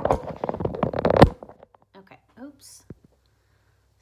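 Handling noise as a phone and a book are moved and set in place: a flurry of knocks and rustles, loudest just over a second in, then faint murmuring and a single soft click.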